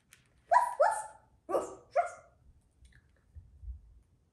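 Four short, high barks in two quick pairs, then quiet.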